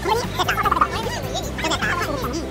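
Voices talking and laughing in short bursts, over steady background music.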